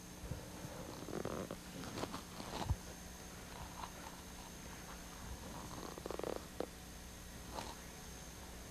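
Quiet room tone with a steady low hum and a faint high whine, broken by a few faint, brief rustles and knocks, including a short buzzy rasp about six seconds in.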